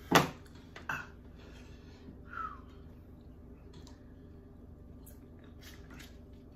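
Eating at a table: a sharp clatter just after the start and a smaller knock about a second in, then quiet chewing and a few faint clicks of a fork on dishes.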